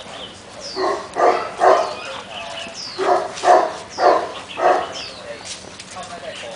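A Siberian husky barking during rough play with another husky: three short barks about a second in, then four more a second and a half later.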